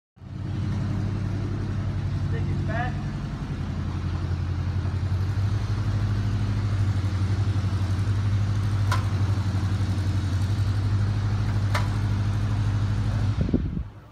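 An engine running steadily at idle, with two sharp clicks partway through; it cuts off suddenly near the end.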